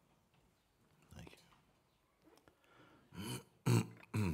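A quiet hall for about three seconds, then near the end two short, low vocal sounds from a man, the second louder, sounding like grunts or throat-clearing rather than words.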